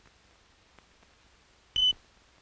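Film-leader sync beep: a single short, high-pitched beep near the end, over the faint hiss and occasional ticks of an old film soundtrack.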